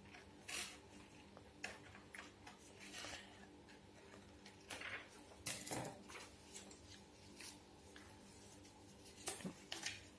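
Faint scissors cutting paper, then paper being handled and folded, heard as scattered short crisp sounds.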